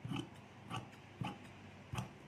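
Large steel tailor's shears cutting through fabric: four short snips of the blades about half a second apart.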